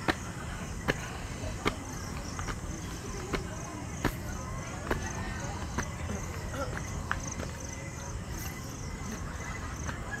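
Footsteps climbing stone steps, one sharp step about every 0.8 seconds, over insects chirping in a steady high-pitched rhythm.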